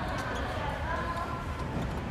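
A woman's voice murmuring faintly over dull, low knocks and a steady rumble.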